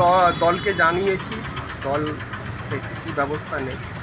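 A man talking into a close microphone in short phrases broken by pauses.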